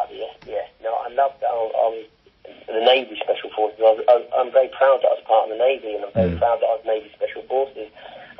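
Speech only: a man talking in conversation, with a short pause about two seconds in.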